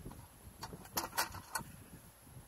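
Goats grazing close to the microphone: about four short, crisp rips and clicks of grass being bitten and torn off.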